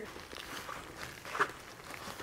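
Soft rustling and scuffing of loose potting soil and a black plastic nursery pot being handled as a potted cat palm is worked loose, with one slightly louder scuff about a second and a half in.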